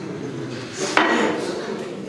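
Metal cutlery striking a plate: one sharp clink about a second in, with a brief ring after it.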